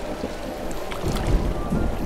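Swimming-pool water sloshing and splashing around a person moving in it, with a few sharper splashes about a second in, and wind rumbling on the microphone.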